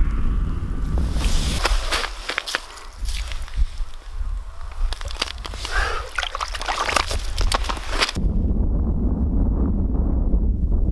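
Water sloshing and splashing in an ice-fishing hole as hands let a brook trout back down through it, from about a second and a half in until it cuts off suddenly near the end. Wind rumbles on the microphone before and after.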